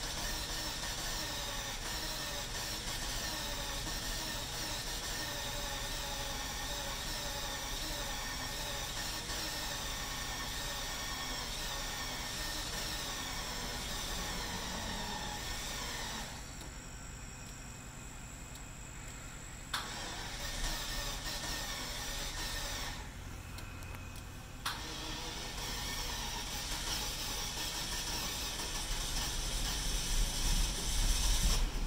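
Jaguar XJS V12 engine, with half its cylinders lacking compression, running and stalling: it cuts out about halfway through, is started again a few seconds later with a click, cuts out again and is restarted once more.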